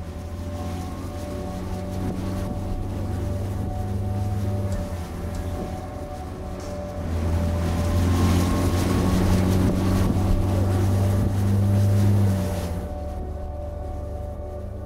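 Speedboat outboard motor running at speed, with a hiss of water and spray; it grows louder about halfway through and drops away shortly before the end.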